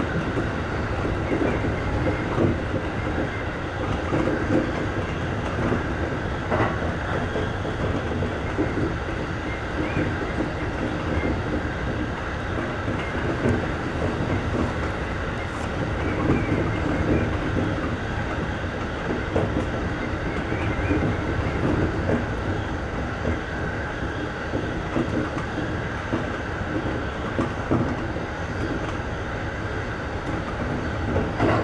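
JR East E531 series electric multiple unit running at speed, heard from inside the leading car: a steady rumble of wheels on rail with occasional faint clicks from rail joints.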